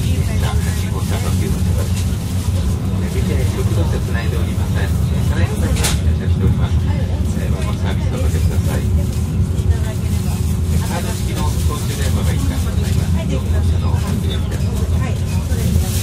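Interior running noise of a 485-series express train car at speed: a steady low rumble of wheels and motors, with faint indistinct voices in the car and a single sharp click about six seconds in.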